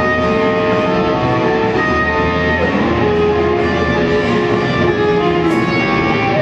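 Live band playing: electric guitars, drums and keyboard, with long held notes that change every second or so, and a brief cymbal crash near the end.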